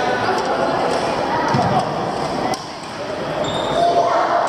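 Echoing hubbub of a large indoor sports hall during badminton play: many voices at once, with a few sharp knocks about one and a half and two and a half seconds in.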